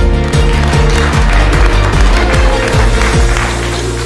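Music with a steady beat and deep, falling bass-drum hits over held notes; about three seconds in the beat drops out, leaving a held low note.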